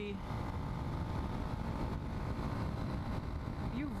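Wind rushing and buffeting over a helmet-mounted camera while a Yamaha XT250's air-cooled single-cylinder engine runs steadily at cruising speed.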